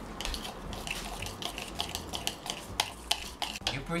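Wooden chopsticks stirring natto in a bowl: irregular light clicks and taps of the chopsticks against the bowl as the sticky fermented soybeans are mixed with their sauce.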